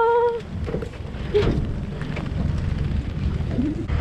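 A short laugh, then a steady low rumble with scattered light taps and patter on an aluminium fishing boat in rough weather.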